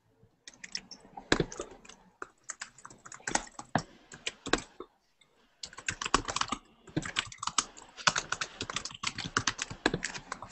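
Fast typing on a computer keyboard: a dense, irregular run of key clicks that pauses briefly about halfway through, then picks up again faster.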